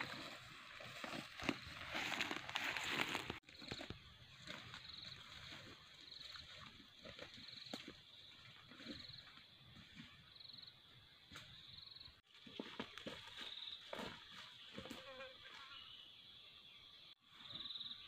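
Forest ambience: a steady high-pitched insect drone with short pulses repeating a little under a second apart, over faint rustling and footsteps through undergrowth. The sound drops out sharply three times.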